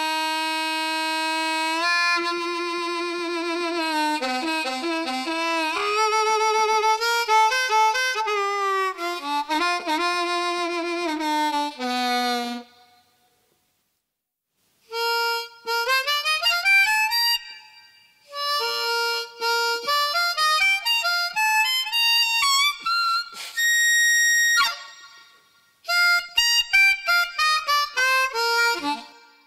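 Hohner Special 20 diatonic harmonica played through a brass horn bell (the Trumonica). It starts with a long held low note and slow low-register phrases with a wavering vibrato. After a pause of about two seconds come quicker phrases higher up, with one long high note held near the end.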